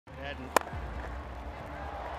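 Cricket bat striking the ball in a cover drive: a single sharp crack about half a second in, over a steady low background hum.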